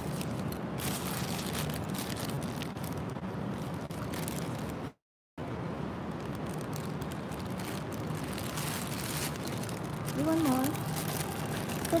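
Steady outdoor background noise, a low hum under a hiss, with scattered faint clicks; the sound cuts out completely for about half a second around five seconds in, and a short voice-like murmur comes near the end.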